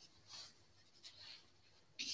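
Faint swishes of a paintbrush dragging oil paint across canvas: two soft strokes, one about a third of a second in and one just after the first second.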